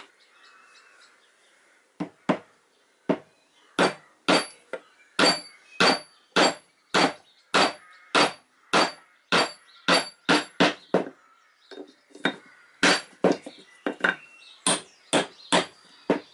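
A hammer striking a wooden peg, driving it through a steel dowel plate to shave it round: a long run of sharp blows about two a second, each with a slight ring. The blows pause briefly about two-thirds of the way through, then start again.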